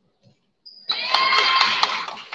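Basketball shoes squeaking on the court, a burst of many overlapping squeals starting about a second in, with sharp thuds of the ball and feet.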